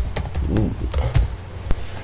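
Computer keyboard keys clicking as a short command is typed at a quick pace: about half a dozen separate keystrokes, ending with the Enter key.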